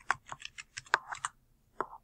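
Computer keyboard being typed on: a quick run of keystrokes, then one separate, louder click near the end.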